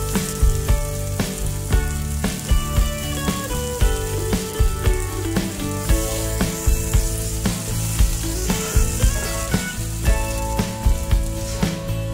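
Diced onions and green peppers sizzling in a frying pan, under background music with a steady beat.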